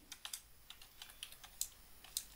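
Computer keyboard typing: a quick run of faint keystrokes, several a second.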